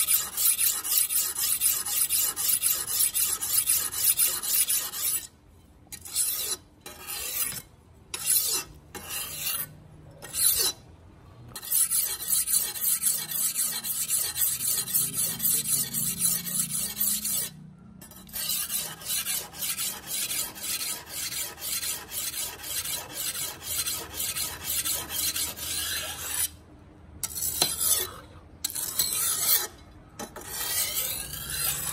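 Steel jungle-knife blade being honed on a wet sharpening stone held in a bench vise: quick, even back-and-forth scraping strokes. The strokes stop for several short breaks about a quarter of the way in, and again briefly twice later.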